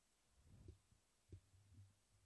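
Faint, low thumps and rubbing from a hand taking hold of a stand-mounted microphone: microphone handling noise, with the sharpest knock a little past halfway.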